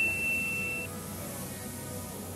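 A single high electronic ding, a pure tone ringing out and dying away within the first second, over quiet background music.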